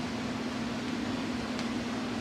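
Steady room noise: a constant low hum with an even hiss, with no distinct knocks or clicks.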